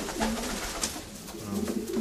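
Homing pigeons cooing in their loft: low coos at the start and again near the end.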